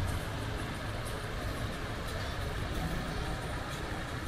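Fountain water jets spraying and splashing steadily into a shallow pool, with a steady low rumble underneath.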